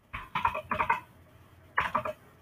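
Computer keyboard typing: a few quick bursts of keystrokes in the first second and another burst near the end.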